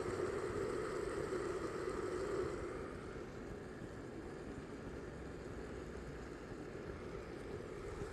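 Sphynx cat purring steadily close to the microphone while being stroked, louder for the first two seconds or so and then softer.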